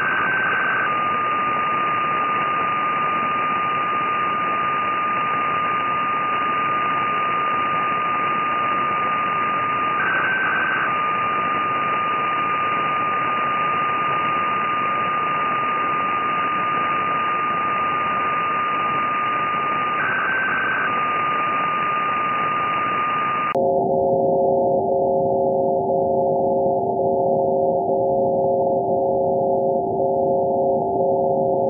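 Receiver audio from a Funcube dongle SDR tuned down to very low frequencies: steady hiss with a continuous whistle-like tone, broken by a brief higher blip every ten seconds. About three-quarters of the way through, the receive filter narrows and the hiss turns duller under several steady tones, one of them pulsing on and off about once a second.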